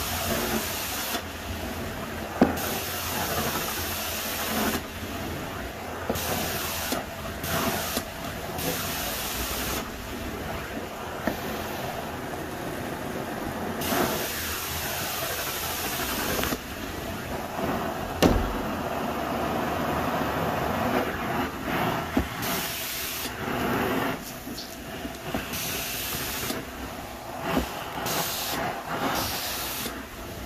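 Carpet extraction wand working a carpet: a steady suction roar, with the cleaning-solution spray hissing on and off in strokes every second or few, and a couple of sharp knocks.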